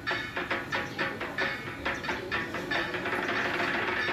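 Fast, even percussion, about five strokes a second, over a steady low ringing tone.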